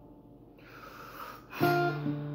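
Acoustic guitar played in a slow intro: the last chord dies away, an audible breath follows, and a new chord is struck and rings out about one and a half seconds in.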